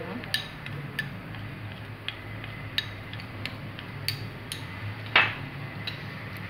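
A metal spoon tapping and clinking against glass bowls while flour is spooned out: a scatter of light clicks, with one louder knock about five seconds in, over a low steady hum.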